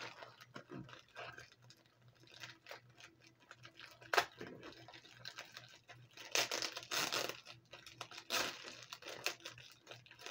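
Clear plastic bag crinkling and crackling as fingers pick at it and work it open, with louder bursts of crackling about four seconds in, around six and a half to seven seconds, and again about eight and a half seconds in.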